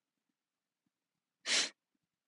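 A young woman's single short, sharp puff of breath, a stifled laugh, about a second and a half in.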